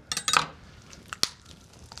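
Chef's knife cutting through raw chicken rib bones: a few short crunches and crackles in the first half second, then a single sharp click a little past the middle.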